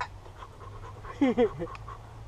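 A man's short breathy exclamations, a gasp or half-laugh, about a second in, over a steady low hum; a single sharp click right at the start.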